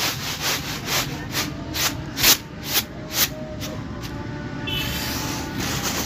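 Uncooked rice grains swishing across a woven bamboo winnowing tray as it is shaken and tossed, in even strokes about two a second, turning into a steadier rustle near the end.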